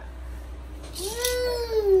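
One long drawn-out vocal sound, a rising-then-slowly-falling 'mmm' or meow-like call that starts about a second in.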